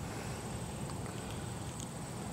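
Faint steady outdoor background noise with a few soft ticks and a thin high whine, no distinct event.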